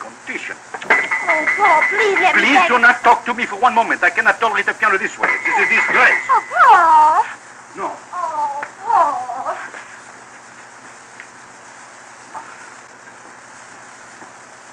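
Wordless voices for the first several seconds, with a steady high tone twice among them. The voices die away to the steady surface hiss of an old sound-on-disc recording.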